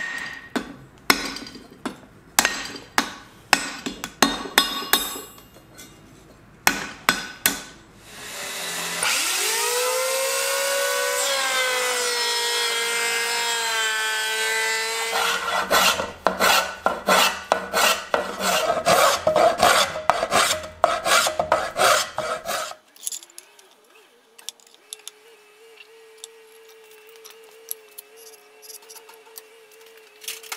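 Hammer blows on steel at the anvil for the first several seconds. Then a power-tool motor spins up and runs steadily for about six seconds. Then a hand rasp is worked along a wooden crossbow stock, about two strokes a second, before things fall quiet to a faint hum.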